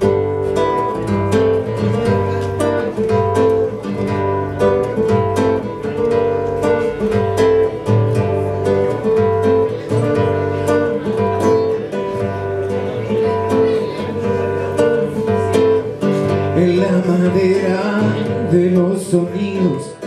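Nylon-string classical guitar played fingerstyle: a steady, continuous run of picked notes forming the instrumental introduction to a song, before the vocal comes in.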